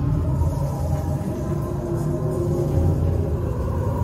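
Deep, steady rumble with faint drawn-out tones above it, the ambient background sound of a dark, fog-filled theme-park ride queue.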